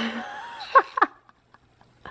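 A person's voice: a short held note, then two brief high falling squeaks or giggles about a second in, after which it goes quiet.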